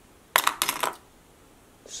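A one-gigabyte Samsung laptop memory module being set down, clattering in a quick run of small clicks lasting about half a second.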